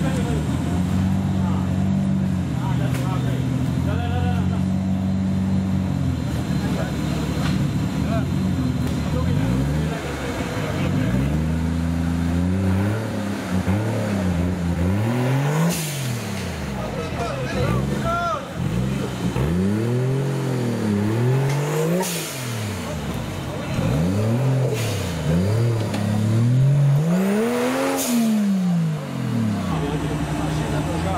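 Off-road 4x4's engine running at a steady speed, then revved up and down over and over, a rise and fall every couple of seconds, as the truck works to climb out of a deep muddy rut.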